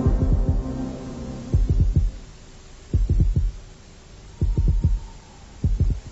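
Heartbeat sound effect: groups of low thumps about every second and a half, over a quiet sustained hum.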